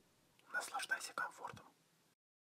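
A short spoken phrase in a quiet, whispery voice, starting about half a second in and lasting just over a second.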